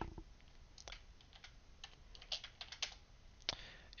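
Faint typing on a computer keyboard: a few separate keystrokes, spaced unevenly with short pauses between.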